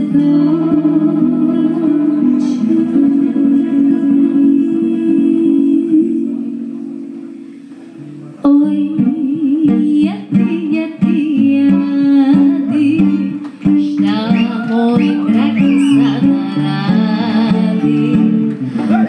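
Live Balkan gypsy band playing, with violin, acoustic guitar and accordion and a woman singing. The music dies away about six seconds in, then comes back suddenly at full strength about two seconds later, with the voice over the band.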